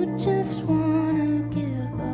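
Live acoustic folk song: a woman singing a slow, gliding melody over strummed acoustic guitar and picked banjo.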